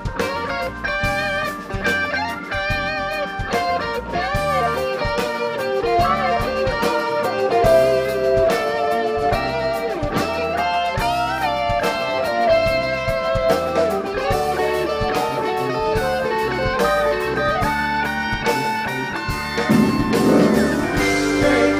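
Live band playing an instrumental passage, an electric guitar leading with bent and wavering notes over bass and drums.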